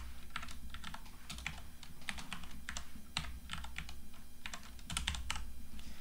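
Typing on a computer keyboard: a run of quick, irregular key clicks, several a second.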